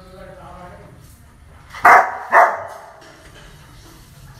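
A large dog barking twice, two loud barks about half a second apart near the middle.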